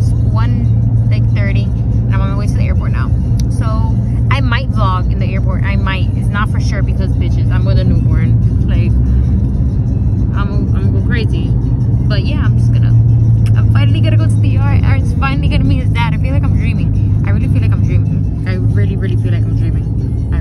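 Steady low engine and road rumble inside a taxi's cabin, under a woman talking.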